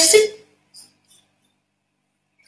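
A woman's voice finishing a spoken phrase, then a pause of near silence with one faint brief click just under a second in.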